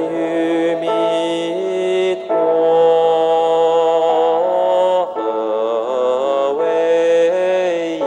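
Recorded sung Buddhist chant of aspiration verses with melodic accompaniment: long held, gently wavering notes in phrases, with short breaks about two and five seconds in.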